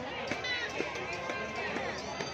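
Crowd noise of many people talking at once, with music playing through it.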